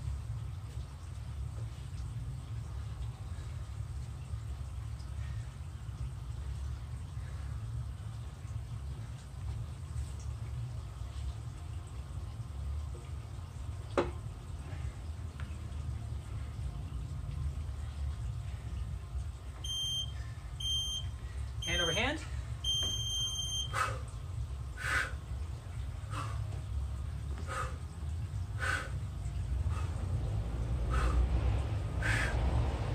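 Digital interval timer beeping three short beeps and then one longer beep, the countdown that closes a 30-second recovery period and starts the next work interval. A steady low rumble runs underneath. A bird calls several times near the end.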